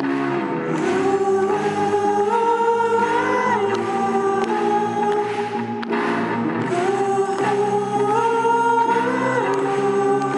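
A rock band playing live, with choir-like sung voices over sustained chords. The melody climbs in steps and drops back about six seconds in, then repeats the phrase.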